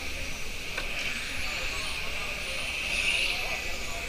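Electric 1/10-scale RC touring cars running laps, their motors giving high-pitched whines that rise and fall as the cars accelerate and brake.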